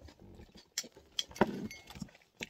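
Close-miked chewing of a mouthful of sushi: soft wet mouth noises and a few small clicks, with a short muffled "да" spoken through the food about halfway through and a faint light clink near the end.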